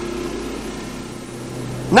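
Narrowboat engine running steadily as the boat moves along the canal.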